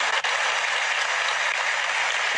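Steady audience applause for a recited poem line.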